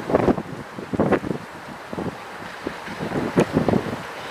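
Gusts of wind buffeting the microphone outdoors: irregular rumbling blasts, strongest at the very start, about a second in and again near the end.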